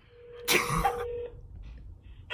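A person coughs once, sharply, about half a second in, over a faint steady tone that stops after a little more than a second.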